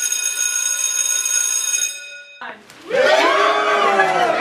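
School bell ringing with a steady electronic tone for about two seconds, then cutting off. About two and a half seconds in, a song with voices singing in harmony starts.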